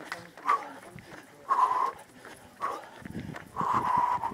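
A runner's heavy, rhythmic breathing, a hard exhale about once a second, with the light slap of running footsteps between breaths.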